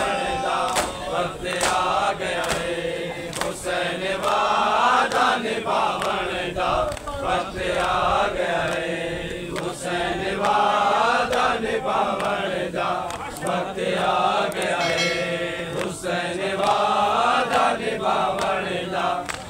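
Crowd of men chanting a noha (Shia mourning lament) together, with a steady rhythm of open-hand slaps on the chest (matam) keeping time.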